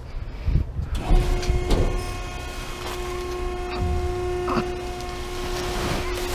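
Plastic bags, film wrap and cardboard rustling and knocking as gloved hands dig through a dumpster's contents. Under it, a steady machine hum starts about a second in.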